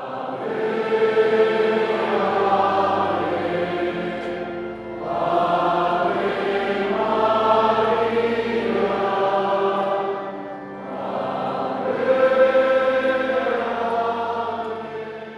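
A choir singing a slow hymn in long held phrases, with short dips between phrases about four and a half and ten and a half seconds in.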